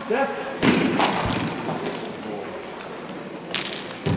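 Sharp clacks of broomball play on ice: brooms striking the ball, four hits, the first about half a second in and the loudest.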